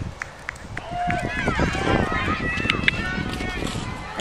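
Several voices shouting over one another across a rugby field during open play, with a few short knocks in the first second.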